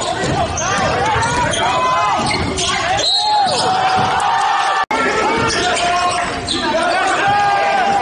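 Live game sound of an indoor basketball game: the ball bouncing on the hardwood court, sneakers squeaking and players' voices, over a steady gym din. The sound drops out for a split second just before the five-second mark.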